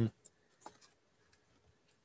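A brief pause in a man's speech: near silence, broken only by one faint click about two-thirds of a second in.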